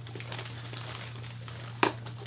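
Paper and packaging rustling and crinkling as a mail package is opened by hand, with a short sharp crack near the end.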